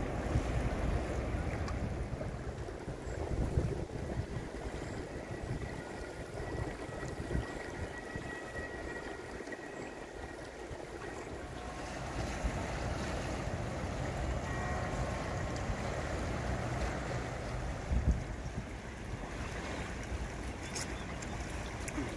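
Swollen, flooding river rushing and washing against a paved riverbank, with gusts of wind rumbling on the microphone.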